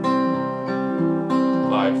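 Steel-string acoustic guitar fingerpicked on a C chord, thumb and fingers plucking single strings in a steady 5-3-4-2 pattern (fifth, third, fourth, second strings), each note ringing on under the next.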